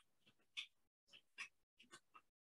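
Near silence with a few faint, short clicks of computer keyboard keystrokes as a command is typed.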